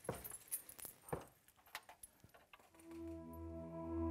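Coins on a belly-dance hip scarf jingling in scattered light clinks as the wearer moves, then music fades in about three seconds in: sustained notes over a low drone.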